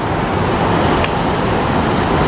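Ocean surf breaking and washing over a rocky shore: a steady rushing noise that swells slightly through the middle.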